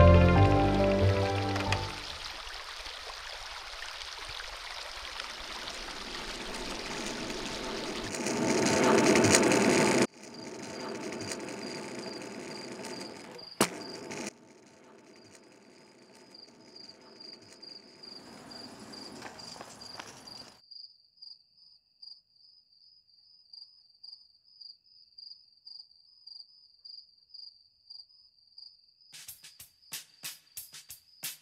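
Intro music ends and gives way to a noisy swell that rises and then cuts off abruptly about a third of the way in. A high, steady, pulsing cricket chirp carries on through the rest, alone for the last stretch, and a run of sharp, evenly spaced clicks starts near the end.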